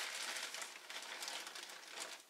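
Faint rustling and light clicking from hands handling the plastic magazine and fan assembly.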